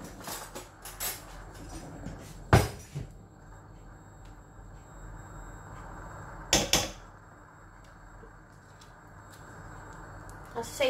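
A few sharp knocks and clinks as a knife and a plastic butter tub strike the rim of a wok while butter is scooped into it; the loudest knock comes about two and a half seconds in and a close pair just before seven seconds, over a steady low hiss.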